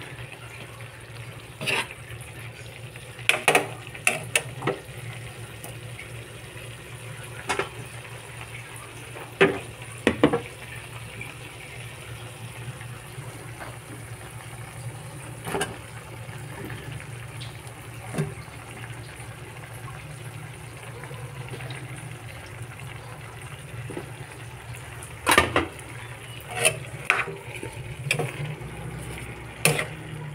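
Pork in sauce simmering steadily in a nonstick frying pan, with a metal spatula knocking and scraping against the pan every few seconds. The knocks come in clusters, most of them near the end.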